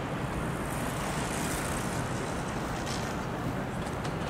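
Steady city street traffic noise from passing cars, a little louder for a moment between about one and two seconds in.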